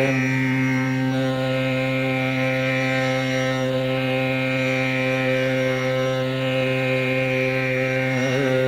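Male Carnatic vocalist holding one long, steady low note on an open vowel during a raga alapana.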